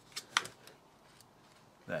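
Two quick sharp clicks close together, then a fainter one, as hands fit a wire connection at the battery end of a crimping tool's handle.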